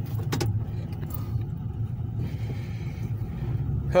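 Inside a moving car: a steady low engine and road rumble as the vehicle rolls along slowly, with a few light clicks in the first second.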